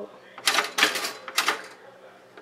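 A white long-slot toaster clattering and rattling in three or four short bursts as small pieces of bread stuck down in its slots are worked at to get them out.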